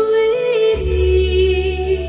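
A woman singing a slow song into a microphone over a recorded instrumental backing track, holding long notes with a low, sustained accompaniment beneath.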